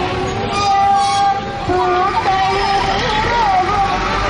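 A single melody of long held notes that bend and waver in pitch, over a steady background din from the procession.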